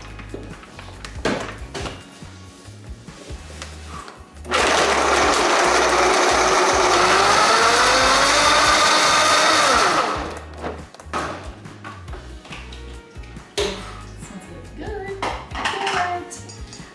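High-speed countertop blender blending a smoothie of ice, frozen blueberries, banana and almond milk. It runs loudly for about five and a half seconds from about four seconds in, its pitch shifting as it goes, then cuts off suddenly.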